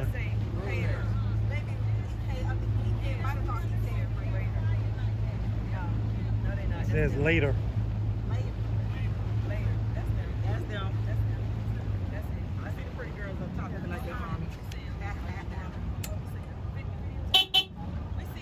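A motorboat's engine running at a steady low pitch, easing off about two-thirds of the way through as the boat slows. Near the end comes a short horn toot.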